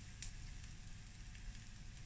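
Paratha and egg frying on a flat iron griddle (tawa), a faint steady sizzle, with one light click about a quarter second in.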